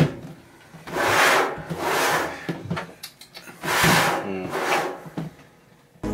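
Large knife stabbed into a plastic storage-tote lid and sawed through it to cut a hole: a sharp stab at the start, then four rasping cutting strokes.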